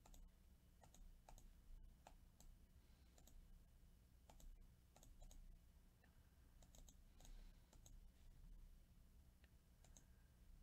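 Faint, irregular clicks of a computer mouse and keys, a few a second at most, over a steady low hum.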